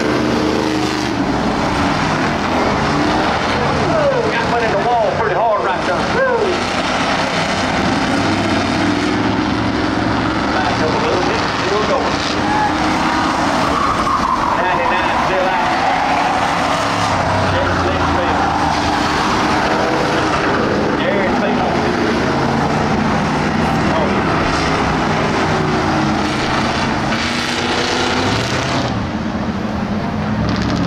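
A pack of Ford Crown Victoria stock cars with V8 engines racing on a dirt oval, engines running hard with pitch sweeping up and down as cars pass and lift for the turns.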